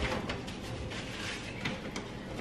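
A soft knock, then faint handling sounds: a kitchen cabinet door opened and items moved about on its shelf.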